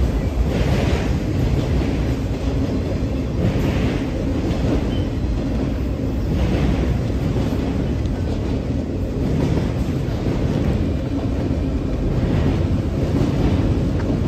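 Freight train of autorack cars rolling past, a steady rumble of wheels on rail. A louder burst of wheel clatter comes about every three seconds as each pair of car trucks passes.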